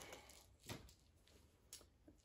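Near silence, with faint handling noise of small gear: a soft rustle about two-thirds of a second in and a few tiny ticks.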